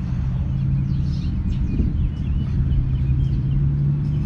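Steady low rumble with a constant low hum, and a few faint high chirps over it.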